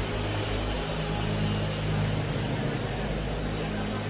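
A steady, low sustained chord held without change, a keyboard pad under the prayer, with a faint hiss of hall noise.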